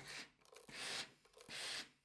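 Hose-fed steam iron working a stretched garment neckline on a wooden tailor's pressing buck to shrink it back into shape: a run of short, faint hisses, a little under one a second.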